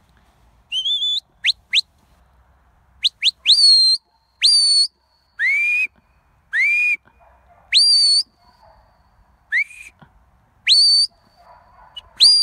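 Sheepdog handler's whistle commands to a working dog herding sheep: a series of about a dozen short whistle blasts, many rising sharply in pitch, some high and some lower, with short pauses between them.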